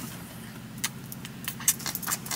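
Steady low hum of a car cabin, with a few light metallic jingles and clicks in the second half.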